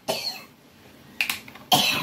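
A person coughing in short bursts at the start and again near the end. Two sharp clicks come a little after a second in.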